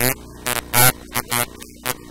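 Short bursts of a harshly distorted, crackling voice over a steady electrical mains hum.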